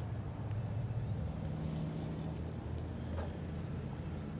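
A steady low mechanical hum under faint outdoor background noise, with no clear start, stop or change.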